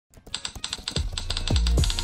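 Quick, even key clicks of a typing sound effect, about nine a second. About a second in, a music track with a deep kick drum and bass comes in under them.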